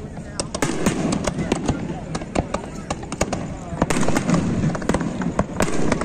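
Aerial fireworks going off in a fast, irregular string of sharp bangs and crackles, several shells bursting close together.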